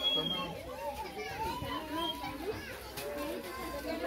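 A crowd of children talking and calling out at once, their high voices overlapping in a continuous hubbub.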